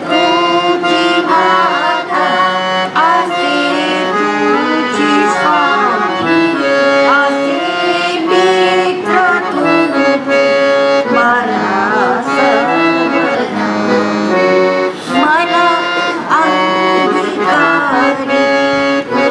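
Harmonium playing a devotional melody in held reed notes that step from pitch to pitch.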